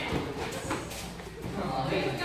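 Bare feet shuffling and thudding on foam mats during sparring, a few short knocks in the first second, with indistinct voices in the room.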